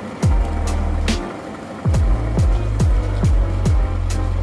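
Background music with a heavy electronic beat: deep bass drum hits that drop in pitch, held bass notes and sharp snare hits.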